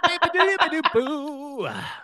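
A person scat-singing: a quick run of nonsense syllables, then a held note with an even vibrato that slides down near the end.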